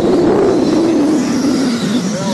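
Radio-controlled dirt oval late model race cars running close by as a pack, their motors whining and sliding down in pitch as they go past.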